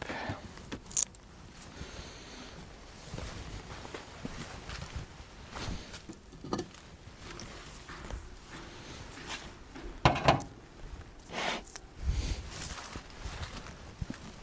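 A stone is set down on a beehive's sheet-metal roof, giving a sharp knock about a second in. Then come scattered footsteps, rustling and handling knocks, with the loudest thumps about ten seconds in.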